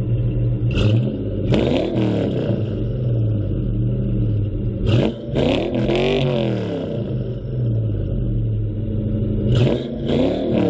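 SN95 Ford Mustang GT's V8 idling and being revved in short throttle blips: the revs rise and fall about two seconds in, twice in quick succession around five to six seconds, and again near the end.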